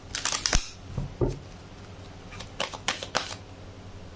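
A deck of tarot cards being shuffled by hand: a quick flurry of card flicks and snaps near the start, a couple more about a second in, and another flurry in the second half as the deck is split into piles.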